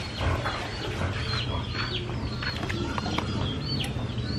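Birds calling: many short, high chirps that fall in pitch, repeating throughout, over a steady low hum.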